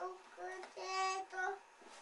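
A young child's sing-song voice: four pitched syllables, the third held longest.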